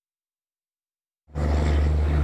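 Dead silence for a little over a second, then a loud, steady low hum cuts in abruptly and holds.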